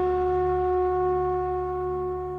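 Background music: a single held, flute-like note over a low steady drone, slowly fading.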